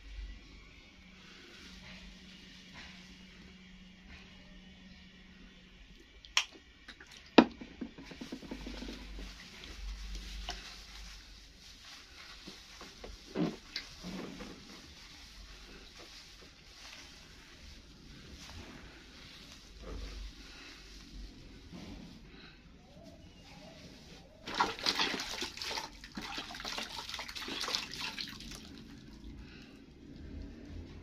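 Wet, squelching scrubbing of a toddler's shampoo-lathered hair under fingers, with two sharp knocks a little after six and seven seconds in. A louder rush of watery noise follows for about three seconds near the end.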